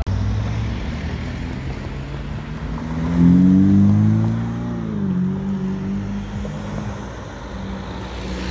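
Ferrari SF90 Stradale's twin-turbo V8 driving past. Its engine note swells to its loudest about three to four seconds in, then drops in pitch as the car moves away.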